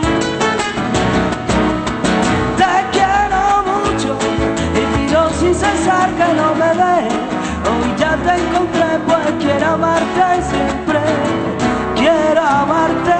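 Two acoustic flamenco guitars playing together, with wordless singing that wavers above them from about three seconds in.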